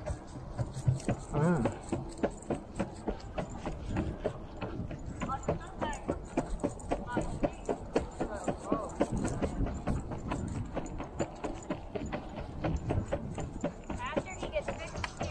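Quick, even clacking of steady movement along a concrete sidewalk, with brief voice sounds now and then.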